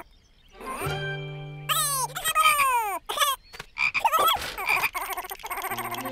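Cartoon sound effects: a quick series of falling pitch glides, then a few wavering calls, over light background music with held notes.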